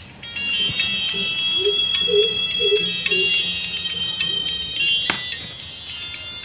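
A song playing thin and tinny from a homemade Bluetooth earphone's small earbud speaker, held against a clip-on microphone, with a steady beat. It is music streamed from a paired phone, a sign that the converted headset is working. A sharp knock of handling comes near the end.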